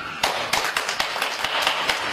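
Hand clapping from a small group of onlookers: a dense, irregular run of claps that starts a moment in and carries on.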